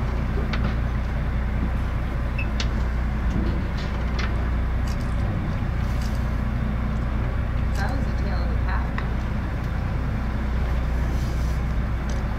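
Boat engine running with a steady low hum, with faint voices and a few brief high sounds over it.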